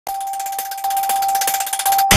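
Electronic logo intro sound for a news channel: a single steady high tone held under a fast, even ticking shimmer.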